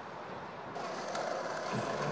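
City street ambience: a steady hum of road traffic, growing a little brighter and louder about three quarters of a second in.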